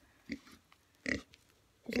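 A pig grunting twice as it walks toward the camera: a short soft grunt, then a louder one about a second in.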